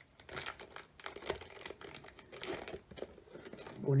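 Foil Pokémon booster pack wrapper crinkling and crackling irregularly as it is handled in the hands.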